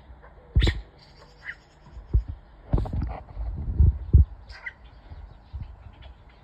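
Purple glossy starlings giving short harsh calls and a few chirps, mixed with several dull low thumps. The thumps are loudest just under a second in and around three to four seconds in.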